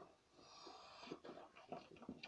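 A child blowing air into a rubber balloon: a faint breathy hiss, then a few short breaths.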